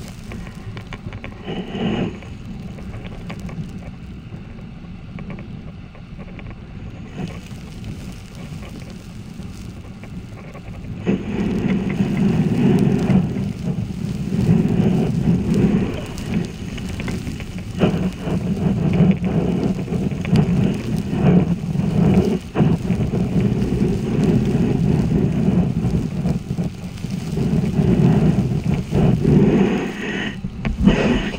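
Flowing water heard through an underwater camera: a steady muffled rushing and rumbling of the river current, which grows clearly louder about a third of the way in.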